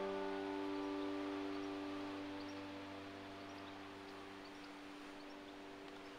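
A sustained piano chord, the last chord of the opening music, slowly dying away until it fades out at the very end.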